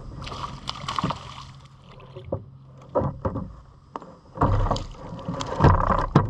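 A hooked bass splashing at the water's surface as it is reeled in beside a kayak, with scattered knocks and handling noise against the boat. The handling noise grows louder over the last second and a half as the fish is swung up out of the water.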